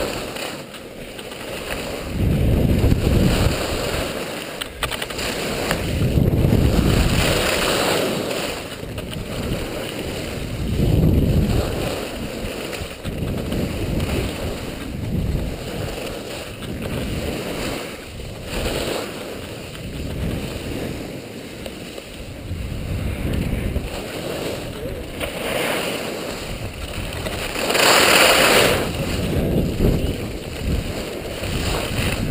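Wind rushing and buffeting over a GoPro's microphone while skiing downhill, in low rumbling surges that come and go every few seconds, with the hiss of skis sliding across packed snow. A louder burst of hiss comes near the end.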